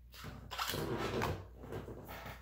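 Rustling and light knocking of a small cardboard cosmetics box being picked up and handled, lasting about a second and a half.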